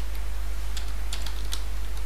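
Computer keyboard keys clicking as a word is typed, several separate keystrokes over a steady low hum.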